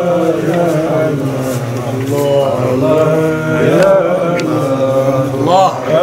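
Devotional chant: a solo voice holding and bending long, ornamented notes over a steady low drone.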